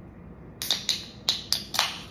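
Fingers working the tab of an aluminium soda can: five sharp clicks over about a second, the last with a short fizz as it opens.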